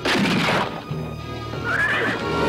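Film soundtrack music, with a loud gunshot right at the start that rings out for about half a second, and a horse whinnying near the end.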